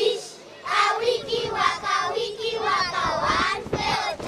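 A group of schoolchildren singing together in chorus, with a brief pause just under a second in before the song goes on.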